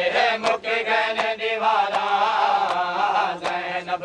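A Punjabi noha (Shia lament) sung by a voice, with the mourners' chest-beating (matam) strikes landing in time, about one every three-quarters of a second.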